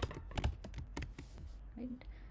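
Typing on a computer keyboard: an uneven run of key clicks as a word is typed.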